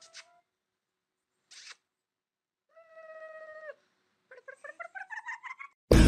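A small child's soft, high vocal sounds: a held 'aah' about three seconds in, then a quick run of short syllables rising in pitch near the end, with a faint click before them.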